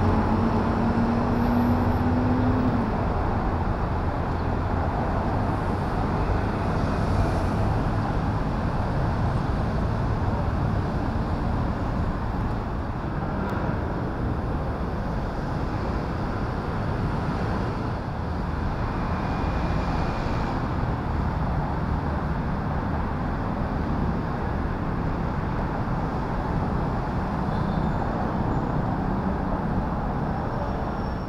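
Steady road traffic noise from cars and taxis on a busy multi-lane road. In the first few seconds one vehicle's engine rises in pitch as it speeds up.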